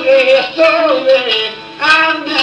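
Male voice singing an Albanian folk song in long, bending held notes over a plucked long-necked lute (çifteli), with a short break between phrases near the end.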